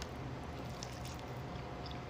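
Quiet room tone with a faint steady hum and a few soft, faint clicks of someone chewing a mouthful of soft fried samosa.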